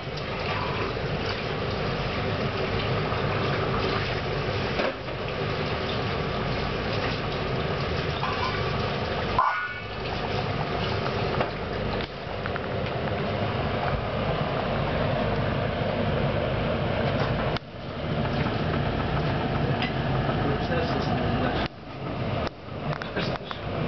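Pots of water boiling on a gas hob, giving a steady bubbling hiss that briefly drops out a couple of times.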